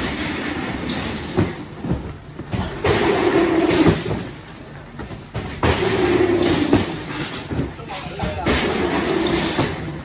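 Cardboard cartons rolling along a metal roller conveyor, a rumbling clatter in three runs of about a second each, with knocks of boxes being lifted, set down and pushed between them.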